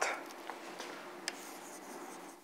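Chalk writing on a blackboard: faint scratching strokes with a few light taps.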